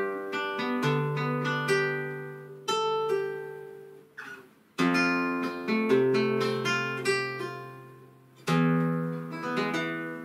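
Nylon-string flamenco guitar playing a slow soleá falseta: arpeggios plucked note by note over a seventh chord, with the bass notes left ringing. It comes in three phrases, each fading before the next begins, the second about five seconds in and the third near the end.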